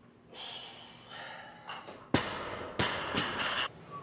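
A weightlifter exhales hard after a power snatch. Then a barbell loaded with bumper plates is dropped from overhead onto the lifting platform: a sharp impact about two seconds in and a second bounce impact under a second later, with the bar and plates rattling briefly.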